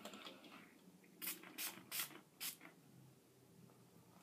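Bath & Body Works Secret Wonderland fragrance mist spray bottle pumped four times in quick succession: four short hissing spurts, about half a second apart.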